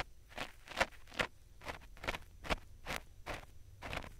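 Ear pick scraping against a binaural dummy-head microphone's ear, in repeated short strokes about two to three a second.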